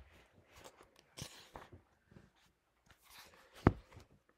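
Scattered faint clicks and rustles, with one sharp knock near the end that is by far the loudest sound.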